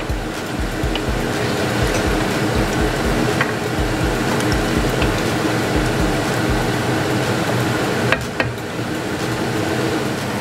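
A pot of beef and broth boiling steadily on a gas hob while it is stirred with a wooden spoon, with a few knocks of the spoon against the pot, two of them close together near the end.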